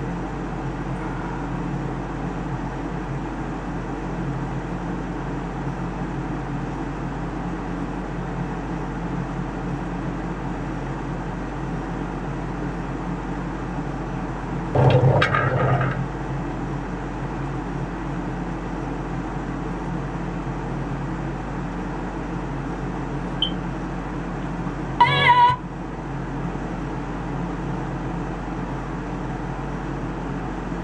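Steady mechanical hum, broken twice by a short pitched call or voice sound: one lasting about a second, about fifteen seconds in, and a shorter one about ten seconds later.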